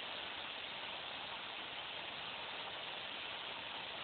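Steady low hiss of the broadcast audio channel, with no other sound.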